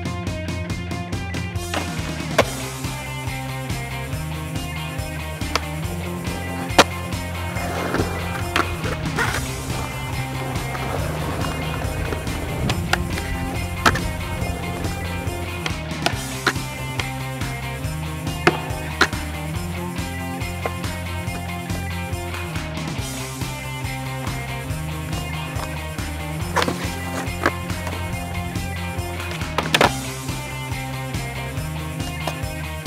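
Skateboard on concrete under background music: wheels rolling, with sharp clacks of boards popping and landing scattered throughout, a few of them louder than the music.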